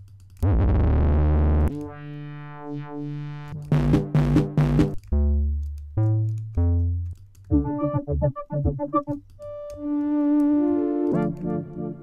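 Sylenth1 software synthesizer presets auditioned one after another, each a different timbre lasting a second or two: a loud buzzy bass, held chords, short plucked notes, a fast run of arpeggiated notes, then held notes giving way to rhythmic pulses near the end.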